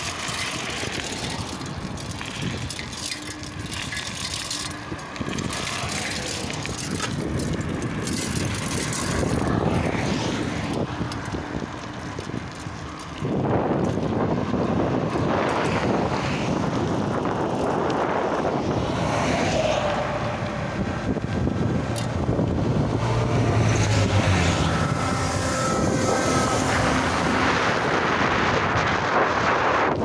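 Road traffic going by on a highway: the steady noise of passing cars and trucks, louder from about halfway through, with engine tones from a passing vehicle later on.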